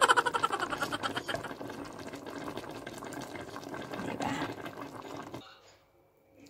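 Water poured into a cooking pot to fill it, a steady stream that starts suddenly and stops about five and a half seconds in.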